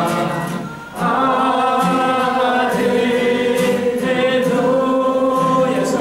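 A congregation singing a hymn together in unison, led by a man's voice at the microphone, with acoustic guitar accompaniment. The notes are long and held, with a brief break between phrases just before a second in.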